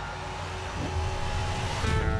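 Trailer sound design: a deep rumble under faint sustained tones, building to a swell near the end.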